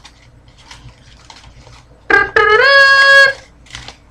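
A man sings a high, falsetto fanfare, a short note and then a longer note that slides up slightly and is held for about a second. Before it come about two seconds of faint clicks and rustles from hands handling a small package.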